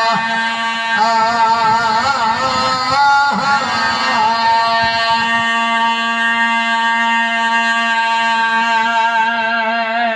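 A man's voice, amplified through a microphone, chanting a drawn-out sung line in the devotional recitation style of a majlis zakir. The pitch wavers and turns for the first few seconds, then settles into one long held note for about six seconds.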